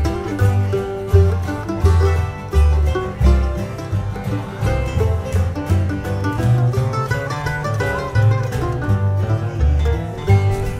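Acoustic bluegrass music played instrumentally: banjo and guitar picking over a bass line whose low notes alternate in pitch on the beat.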